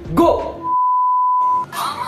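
A censor bleep: one steady, high-pitched pure tone about a second long, with all other sound muted while it plays, covering a word. Speech comes just before it and resumes right after.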